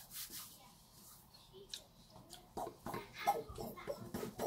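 A man's short muffled vocal sounds with his hand at his mouth, starting about two and a half seconds in after a very quiet stretch with a few faint clicks.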